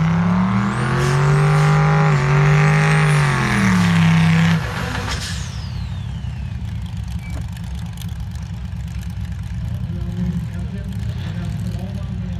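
Car engine revved hard and held at high revs for about four seconds, the pitch sagging slightly before it cuts off suddenly. A thin falling whine follows just after.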